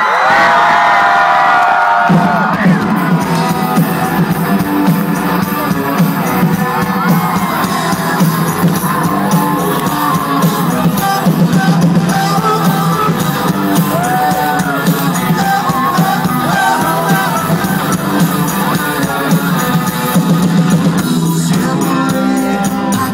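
Live Christian rock band in a large hall, heard from among the audience: a long held vocal note opens, then the full band comes in about two seconds in and plays on loud and steady, with singing over it.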